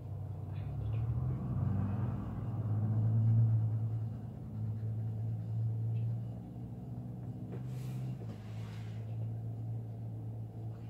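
A low, pitched mechanical rumble, like an engine running, swells to its loudest about three seconds in and then settles to a steadier drone. Faint scratching and handling sounds come from a pencil working on card stock.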